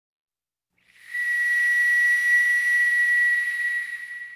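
A breathy, high whistle holding one steady note for about three seconds, starting about a second in and fading away near the end.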